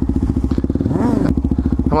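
Suzuki DR-Z400SM supermoto's single-cylinder four-stroke engine running at low throttle, the revs rising and falling once about halfway through.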